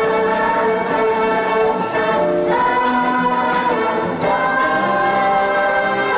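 Ballroom dance music: an orchestral recording with brass and long held chords that change every second or so.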